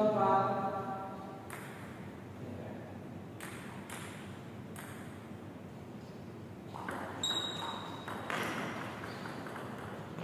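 Table tennis ball clicking off paddles and the table during a rally, a series of sharp, irregularly spaced ticks. A brief high squeak sounds about seven seconds in.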